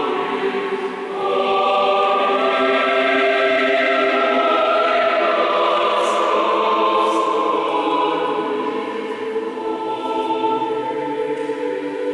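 Mixed choir of men's and women's voices singing sustained chords in a reverberant church, with a brief dip between phrases about a second in.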